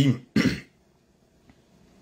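A man clears his throat once, briefly, just after finishing a spoken phrase.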